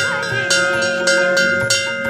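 Large brass temple bell rung by its rope, the clapper striking it about twice a second while its tone rings on steadily between strikes.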